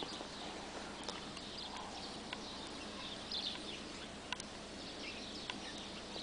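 Quiet outdoor background noise with faint, scattered bird chirps and a few light ticks.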